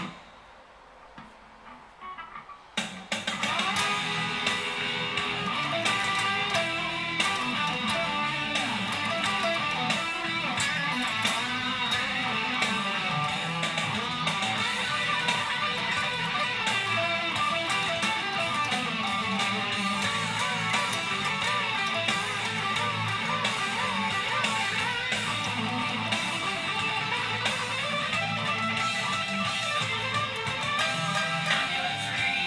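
Distorted electric guitar, a Gibson, playing a metal lead solo. After a short silence at the start, the solo runs continuously with string bends and vibrato.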